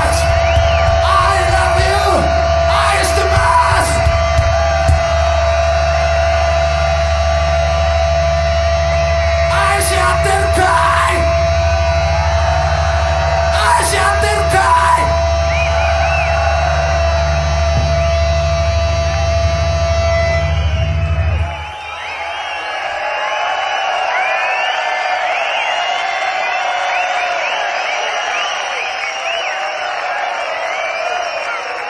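A Japanese garage-rock and heavy-metal band's amplified guitar and bass hold one loud, droning sustained noise with a steady ringing tone through it, while several shouts come over the top. About two-thirds of the way through, the band stops abruptly, leaving a festival crowd cheering and whistling.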